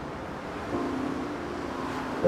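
Street ambience: a steady wash of traffic noise, with faint background music tones coming in under it partway through.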